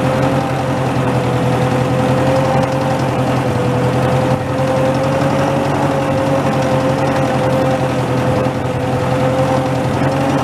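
Massey Ferguson tractor engine running steadily as the tractor drives, heard close up from the driver's seat, with a steady whine over the engine note.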